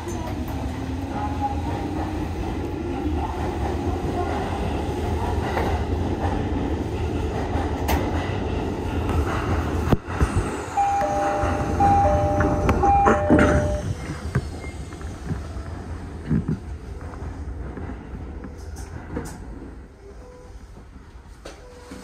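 Cab interior of an Odakyu 1000-series electric train: a steady running rumble for about ten seconds, then a couple of sharp clicks and a short series of electronic beeps in two pitches as the train comes to a stand at a platform. The noise then settles to a quieter standing hum.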